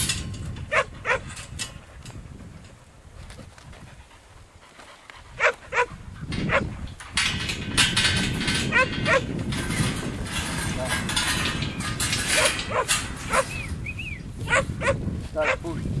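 Sheep bleating now and then, with a quieter lull a few seconds in before the calls and background noise pick up again.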